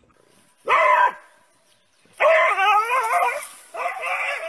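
German Shepherd puppy barking: one short bark about a second in, then a longer bark with a wavering pitch, and more barking near the end.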